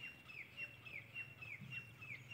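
A bird calling over and over, faint: short high chirps about three a second, each sliding down in pitch.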